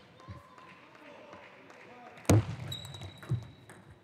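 Table tennis ball struck by bats and bouncing on the table during a serve and the opening strokes of a rally in a large hall. The loudest is a sharp crack with a low thud under it about two and a quarter seconds in, and another crack follows about a second later.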